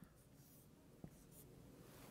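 Faint scratch of a marker pen drawing lines on a whiteboard, with a single light click about a second in.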